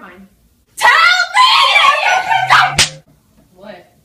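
A girl screaming loudly for about two seconds, with a sharp slap near the end of the scream.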